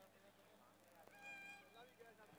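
A faint, near-quiet background of distant voices, broken about a second in by one short, steady horn beep of about half a second: a vehicle horn.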